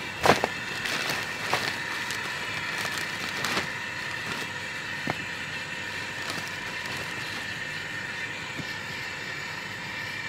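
Hose-fed gas torch running steadily as it lights a wood fire without firelighters. A few sharp knocks in the first few seconds, wood pieces landing on the pile.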